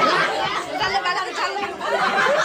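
Several people talking over one another at once in a loud, continuous group chatter.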